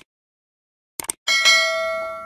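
Subscribe-button animation sound effect: a short click about a second in, then a bright bell ding that rings on and slowly fades.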